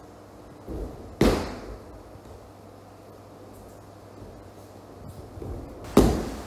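Two breakfalls on a dojo mat: a body lands with a sharp slap about a second in, just after a short scuff of feet, and a second slap comes at the very end.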